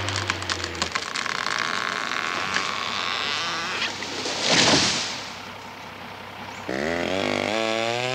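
A lodged tree being winched down by a skidder: the skidder's engine hum stops about a second in, wood cracks and splinters repeatedly, then the tree crashes through the canopy to the ground about four to five seconds in. Near the end an engine starts running, rising in pitch and then holding steady.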